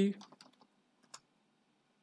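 A few faint computer-keyboard keystrokes, the clearest just over a second in: the short command "id" being typed and entered.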